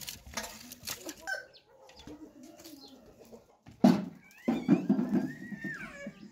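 Chickens clucking, with a few light clicks in the first second and a sharp knock about four seconds in that is the loudest sound.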